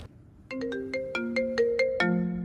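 Smartphone ringtone for an incoming call: a melody of short ringing notes, about five a second, starting about half a second in.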